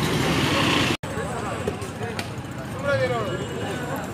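Outdoor street background noise with a few faint spoken words, broken by a momentary dropout about a second in.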